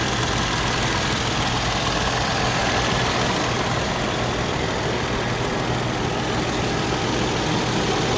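Toyota FJ Cruiser's 4.0-litre V6 idling steadily, heard over its open engine bay.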